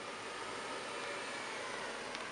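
A Mercedes-Benz C-Class sedan rolling slowly on pavement: a faint, steady hiss of tyres and engine under background noise.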